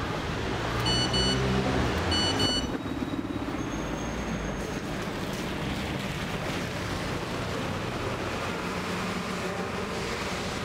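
Town-centre traffic on a rain-wet road, a steady wash of passing cars with a heavier vehicle rumble in the first few seconds. Two short high electronic beeps sound about a second in and again a second later.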